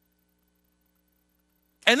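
Near silence in a pause, with only a faint steady electrical hum; a man's voice starts speaking near the end.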